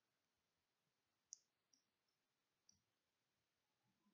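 Near silence, broken by three faint short clicks: one about a second and a quarter in, a softer one shortly after, and another near three quarters of the way through.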